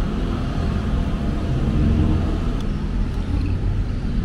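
Bristol Venturi 500 motorcycle engine idling steadily in neutral.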